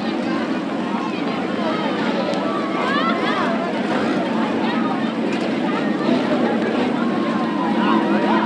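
Demolition derby cars' engines running as a derby car drives slowly across the dirt arena, under the steady chatter of a grandstand crowd.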